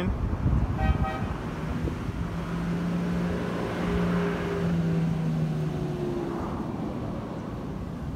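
A motor vehicle passing: a steady low engine drone starts about a second and a half in and lasts about four seconds under a swell of road noise that fades. A brief higher tone sounds about a second in, and wind buffets the microphone.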